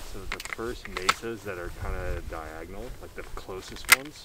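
Low, untranscribed talking between two men, with one sharp click near the end.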